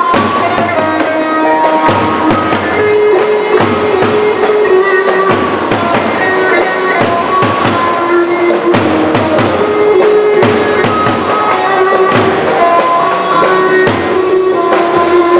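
Live Turkish folk dance music: davul drums beaten with sticks in a steady, driving rhythm under a stepping melody line.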